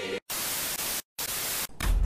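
Bursts of harsh static hiss, like a television-static sound effect, chopped on and off: two bursts of about half a second each and a brief third one, with short dead silences between them. A low rumble sets in just at the end.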